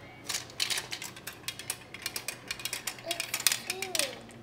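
A gumball dropping from a toy spiral gumball machine and clattering down its plastic spiral ramp: a rapid, uneven run of small clicks and rattles starting just after the top is pressed and lasting about three and a half seconds.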